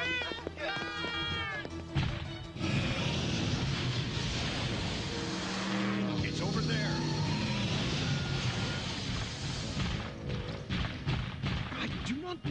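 Cartoon soundtrack: high-pitched frightened yelling for about the first two seconds, then a long rushing whoosh lasting about seven seconds over music. Near the end comes a quick run of sharp hits.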